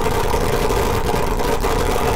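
'Triggered' meme sound effect playing back in a video editor's preview: a loud, harsh, distorted noise held steady with a droning pitch.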